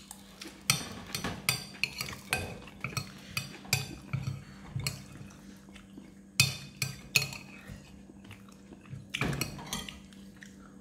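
Metal spoon clinking and scraping against a ceramic plate while picking through fried fish: irregular sharp taps, a few louder clinks about six and a half, seven and nine and a half seconds in.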